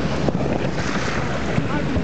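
An inflatable boat moving through floating glacial ice: its motor runs steadily under a constant rush of water, with wind buffeting the microphone.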